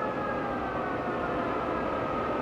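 Engine-room main lube oil alarm aboard the nuclear aircraft carrier USS Enterprise (CVA(N)-65): a siren-like wail whose pitch slides slowly down and then holds steady near the end, over a constant rumble of engine-room machinery.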